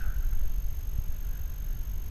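Low, steady rumble on the microphone of a body-worn action camera, with a few faint knocks.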